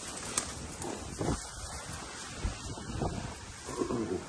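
Outdoor ambience of wind on the microphone and rustling of dry scrub and brush, with a few soft thumps.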